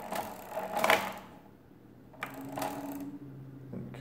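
Brass gearing of a 19th-century Thomas de Colmar arithmometer clicking and rattling as its crank is turned, in two spells: one in the first second and another from about two seconds in. The second spell is the carry mechanism carrying over across the result register.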